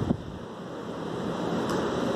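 Steady background noise of a room with no speech, an even hiss and rumble that swells slightly after about a second, with a short click near the start.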